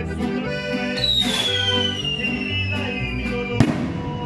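Band music with guitar and accordion plays on a steady beat. About a second in, a skyrocket's whistle starts high and slides slowly down in pitch for about two and a half seconds, then ends in one sharp bang near the end.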